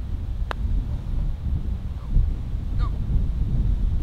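Wind buffeting the microphone, a steady low rumble throughout. About half a second in comes a single sharp click: a putter striking a golf ball.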